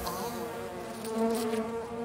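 Cartoon sound effect of a fly buzzing: a steady, nasal drone that grows a little louder partway through.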